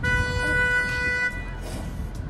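Car horn giving one steady blast of about a second and a quarter, then cutting off.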